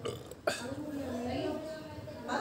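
A person's vocal sound that starts abruptly about half a second in and is drawn out with a wavering pitch.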